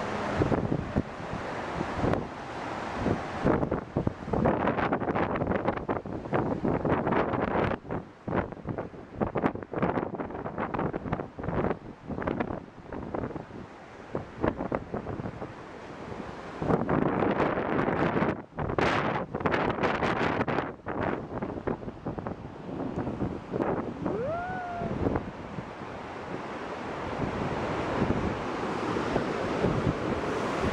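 Wind buffeting the microphone in uneven gusts over the steady rush of a waterfall cascading over rocks.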